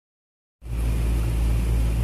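A steady low hum starts abruptly about half a second in and runs on evenly.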